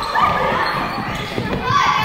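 Children laughing and calling out while their footsteps knock on a wooden gym floor, with the echo of a large hall.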